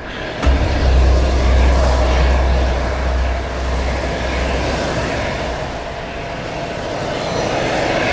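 Film sound effect: a loud, dense rush of noise with a deep bass swell that comes in sharply about half a second in, holds for several seconds and then fades. It accompanies a life-draining grip on a victim's face.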